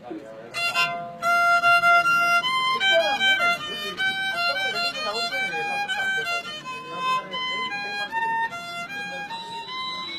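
A violin playing a slow solo melody, held notes moving step by step up and down, starting about half a second in.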